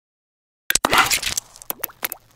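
Cartoon pop sound effects of an animated intro: silence at first, then a quick cluster of pops and clicks about a second in, and two or three short rising bloops near the end.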